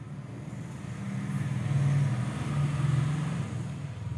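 Low engine rumble of a passing road vehicle, swelling about a second in and fading near the end.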